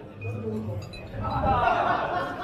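Voices talking on stage, louder from about a second in, with a couple of faint metallic clinks early on.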